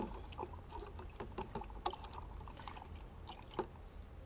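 A metal spoon stirring water in a glass jar, with light, irregular clinks of the spoon against the glass and a faint swish of the liquid.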